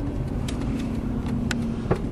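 Cabin sound of a 1995 Jeep Cherokee Limited on the move: steady engine and road rumble with a constant hum, the air conditioning blowing, and a few light clicks.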